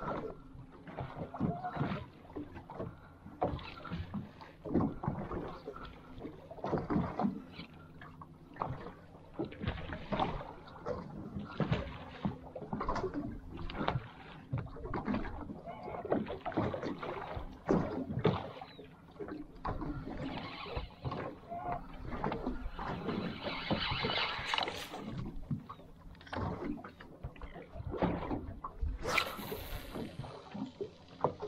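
Water slapping against the hull of a small boat in irregular knocks and splashes, over a faint steady low hum.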